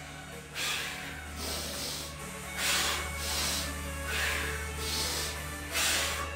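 A man breathing hard and forcefully while doing push-up pikes, about one loud breath a second, over steady background music.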